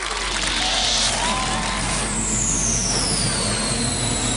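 Broadcast intro sound effect: a steady, dense rumbling noise, with a short burst of hiss about half a second in and a high tone falling slowly through the second half.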